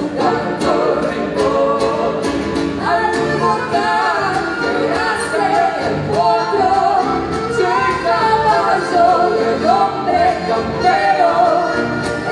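Live gaúcho folk music: acoustic guitars and accordion playing a steady rhythm while a woman sings the melody.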